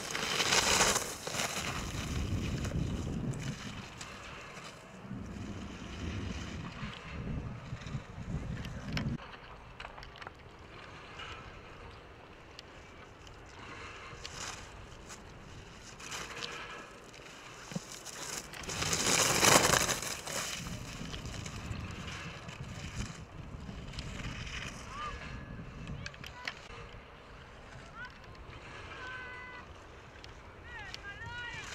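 Ski edges carving and scraping across hard-packed snow as giant slalom racers pass close by, in two loud rushes: one at the start and a stronger one about nineteen seconds in.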